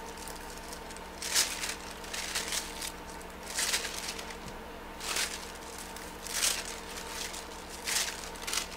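A stylus scratching over tracing paper in short strokes, about one a second, transferring a pattern, with the paper rustling as it is handled.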